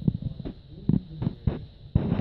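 Wind buffeting the microphone: a run of about seven dull, low thumps over two seconds, over a low rumble.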